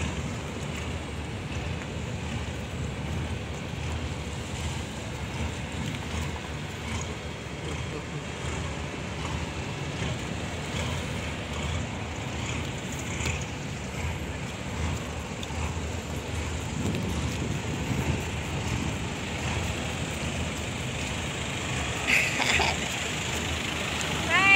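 Wind rumbling on the microphone, a steady low noise over faint outdoor background sound, with a few brief louder sounds near the end.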